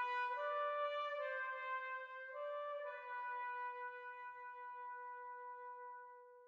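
Slow intro music of sustained brass notes in a chord, stepping to new chords a few times before settling on a single held low note that fades away near the end.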